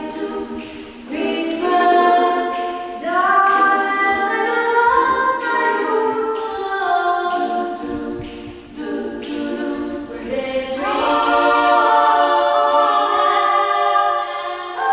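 Small female vocal ensemble singing unaccompanied in several parts, held notes in phrases with brief breaks between them.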